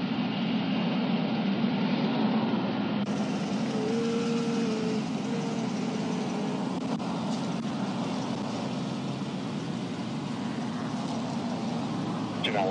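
Steady low drone of idling vehicle engines and highway traffic, with a brief steady tone about four seconds in.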